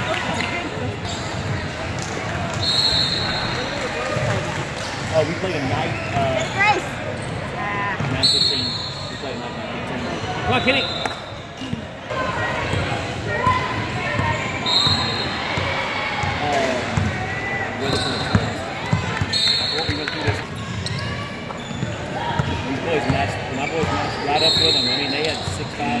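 A basketball bouncing on a hardwood gym floor during play, with sneakers squeaking now and then and voices of players and spectators in a large gym.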